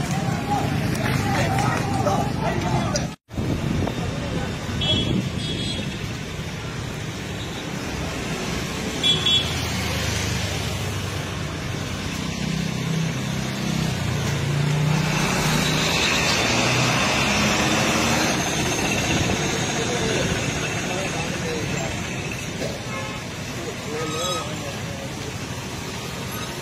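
Busy street noise: voices of a crowd mixed with road traffic, cars and motorbikes passing, with a few short horn toots in the first ten seconds. The sound drops out abruptly for an instant about three seconds in.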